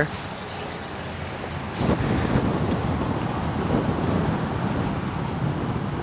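Steady outdoor rushing noise with no clear pitch, stepping up in level about two seconds in and holding there.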